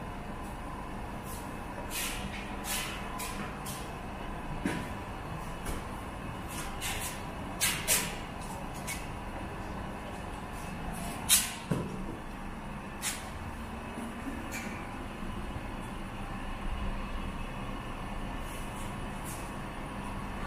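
A series of sharp clicks and knocks from handling gear at a parked sport motorcycle, the loudest about eleven seconds in. They sit over a steady low engine-like rumble and hum.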